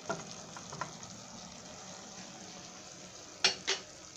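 Chicken and celery frying in a stainless steel pot, a steady sizzle with a few light clicks of stirring early on. Near the end come two sharp knocks about a third of a second apart.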